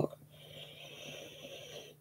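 A woman drawing in a long, faint breath that lasts about a second and a half.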